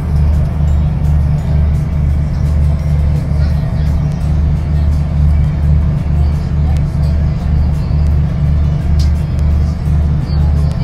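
Ferry's engine running under way: a loud, steady low drone with an even throb.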